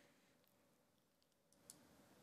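Near silence: room tone with a couple of faint clicks near the end.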